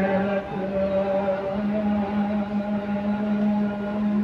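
Hindu prayer chant: a voice intoning a mantra on one long, near-level note, with short breaks between phrases.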